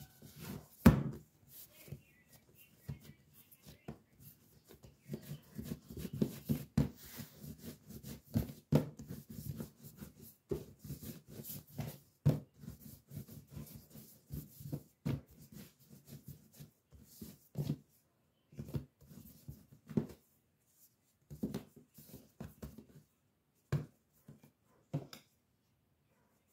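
Hands kneading and rolling a large ball of pizza dough on a kitchen countertop: irregular soft thumps and pats of the dough pressed and pushed against the counter, with a sharper knock about a second in and a few short pauses.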